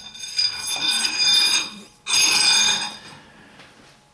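A steel drawbar sliding through the bore of a dividing head's chuck and spindle: metal scraping on metal with a high ringing squeal. It comes in two pushes, the first about a second and a half long, the second about a second.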